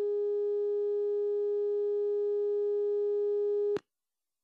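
Telephone line tone: one steady, unbroken mid-pitched tone that cuts off abruptly shortly before the end. It signals that the phone call has just been ended.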